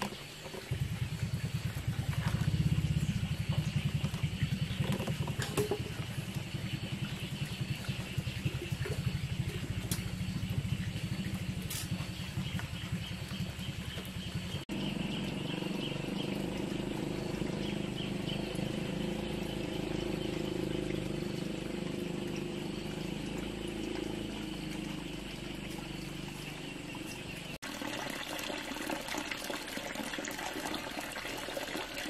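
A small engine running steadily, a low pulsing rumble that sets in just under a second in and changes in tone at a cut about halfway through. A faint high chirring runs above it, with a few light clicks.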